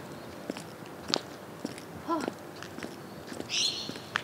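Six-inch stiletto heels of Pleaser Captiva-609 platform shoes clicking on concrete at a walking pace, about two steps a second. Near the end a harsh, high-pitched bird call sounds once.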